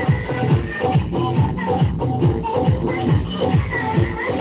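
Folk dance music led by double-headed barrel hand drums, their deep strokes bending down in pitch in a steady dance rhythm of about three strokes a second, with a melody running above.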